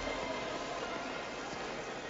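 Steady background ambience of a crowded indoor shopping mall: an even, quiet hiss with no distinct sounds standing out.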